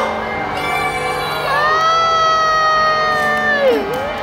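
A child's long, high-pitched shout, held for about two seconds and then dropping in pitch, over crowd noise and background music.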